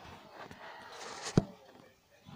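Handling noise from a handheld phone being moved: faint rustling and one sharp click about a second and a half in.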